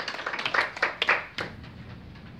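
A small audience's applause dying away into a few scattered claps, which stop about a second and a half in.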